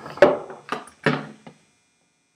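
A few knocks and clatters of kitchenware being handled, the sharpest about a quarter second in; the sound cuts out abruptly about one and a half seconds in.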